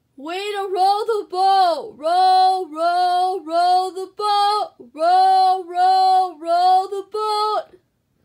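A woman singing a short chant-like tune in a high voice: about eleven held notes, most close to one pitch, with short breaks between them.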